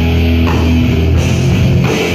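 A crossover thrash band playing live at full volume: distorted electric guitars, bass and a drum kit, heard from within the crowd.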